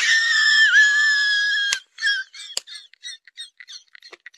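A long, loud, high-pitched cry that holds one pitch for nearly two seconds and breaks off suddenly, followed by a quick run of short chirping calls.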